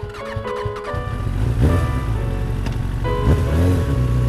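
A motor vehicle engine revving over background music: the engine comes in about a second in and rises and falls in pitch twice.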